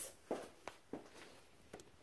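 A few faint, soft knocks and shuffling sounds, four short ones spread over two seconds, against a quiet small-room background.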